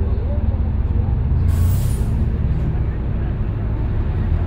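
Heard from inside, a city bus engine idles with a steady low rumble, and about a second and a half in there is a short, sharp hiss of compressed air, like an air brake releasing.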